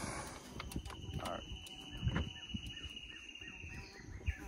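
Wild animal calls: a thin, steady high trill that starts just under a second in and holds on, joined in the second half by a run of short repeated calls, about three a second.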